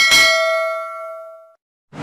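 Notification-bell 'ding' sound effect of a subscribe-button animation: a single bell strike ringing with several tones and fading out over about a second and a half. Music starts right at the end.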